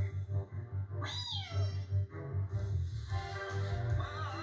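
A cartoon cat's meow: one loud yowl about a second in that rises and then falls in pitch, over background music, heard through a TV's speaker.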